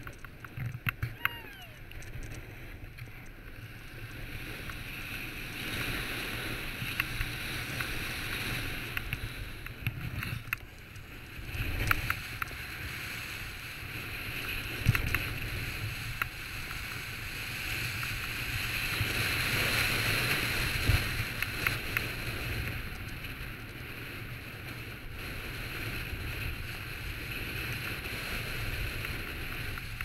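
Wind rushing over the microphone and skis scraping across packed snow on a downhill run: a steady hiss that swells and fades with speed and turns, loudest a little past the middle. A few sharp knocks come through along the way.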